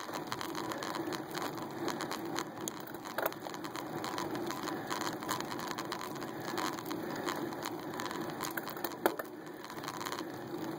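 Bicycle climbing slowly on rough asphalt, heard through a phone clamped to the handlebars: a steady rattle and ticking carried through the mount, with one sharper knock about nine seconds in.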